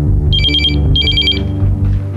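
A telephone ringing: two short, rapidly pulsing rings, each about half a second long, about a second apart, over background music with low sustained string tones.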